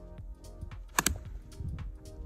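Background music, with one sharp crack of a golf club striking a ball off the tee about a second in.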